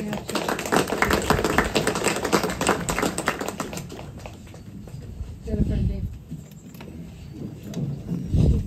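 A small crowd applauding briefly after a spoken tribute, dying away after about four seconds. Then come low bumps and rustling from the camera being handled.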